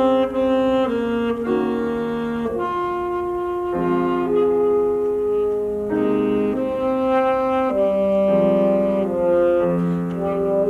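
A saxophone playing a slow melody of held notes, moving to a new note every second or so.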